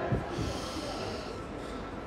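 A short breathy exhale close to the microphone, a hiss lasting about a second, over the steady murmur of a busy pedestrian street.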